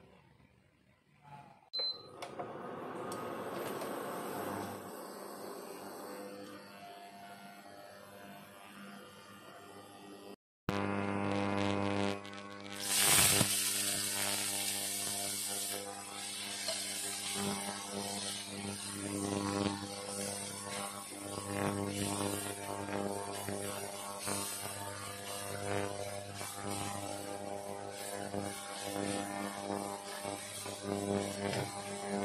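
After an abrupt cut about ten seconds in, shallots and garlic sizzle in oil in a wok, with a loud burst of sizzling a few seconds later, over a steady electrical buzzing hum from the cooktop. The first ten seconds hold a quieter, different sound.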